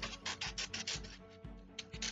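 A sheet of paper rustling and scratching as it is handled, a quick run of strokes in the first second that thins out, over soft background music.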